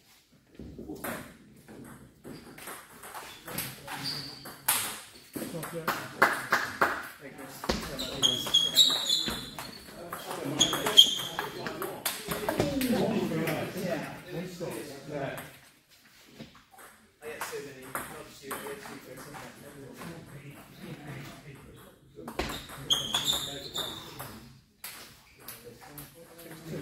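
Table tennis ball clicking back and forth off paddles and table in a series of rallies, with short sneaker squeaks on the sports floor during the faster exchanges.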